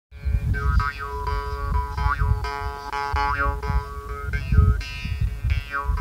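Mouth harp played with a fast, rhythmic twang over a steady drone, its bright overtones swooping up and down about once a second.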